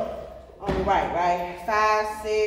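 A gospel song playing over the hall's speakers, its lead vocal held in long sung notes, with one low thump a little over half a second in.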